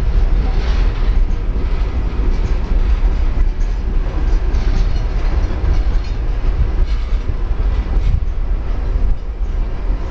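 Freight train of boxcars rolling past close by: a steady, loud rumble of steel wheels on rail, with faint irregular clatter from the cars.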